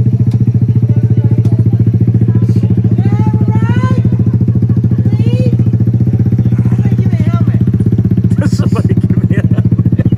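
Motorcycle engine idling close by, a loud, steady low note with rapid even pulsing, while people's voices call out over it a few times.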